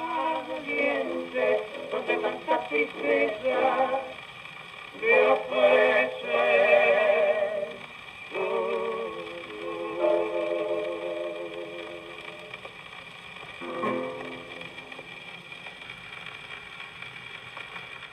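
A shellac 78 rpm record of a waltz played on an acoustic Victrola gramophone: the closing bars of a male vocal duet with piano. Sung notes and piano chords die away after a last chord about 14 seconds in, leaving the needle's surface hiss.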